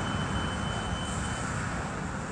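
Steady distant engine rumble, with a faint thin high tone that stops about one and a half seconds in.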